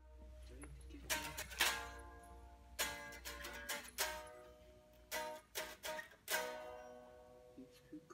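Electric guitar played clean for a soundcheck: single chords and notes struck every second or so, each left to ring. A low hum sits under the first half and then fades.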